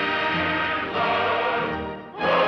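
Orchestral film score with a choir, holding sustained chords that ease off near the end.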